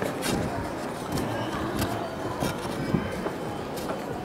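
Printed paper pages rustling close to the microphone as they are carried, with irregular crackles.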